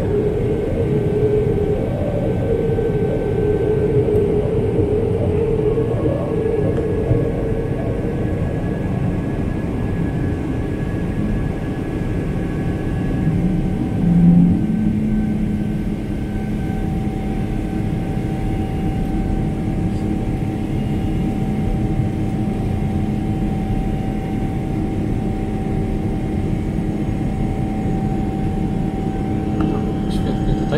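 Cabin noise of an Emirates Boeing 777-300ER climbing after takeoff, heard from a window seat beside its GE90 engine: a steady roar of engine and airflow with a low hum. About halfway through there is a short louder swell, then a new steady hum tone that holds to the end.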